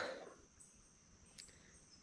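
Near silence with a faint, steady, high-pitched insect drone and a single faint click about one and a half seconds in.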